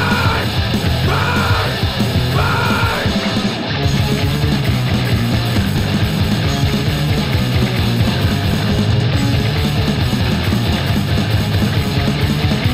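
Thrash metal band playing: distorted electric guitars, electric bass and an electronic drum kit, with shouted vocal lines in the first three seconds or so, then the instruments alone.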